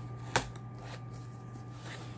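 A knife blade slitting the packing tape on a cardboard box, a light scratchy cutting and rustling with one sharp click about half a second in, over a steady low hum.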